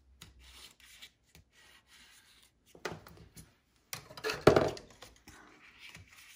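A bone folder rubbed along folded paper to crease it, with paper rustling as the strips are handled; the loudest, longest stroke comes a little after the middle.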